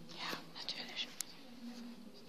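Faint whispering and murmured voices, not loud enough to make out words, with a few small sharp clicks.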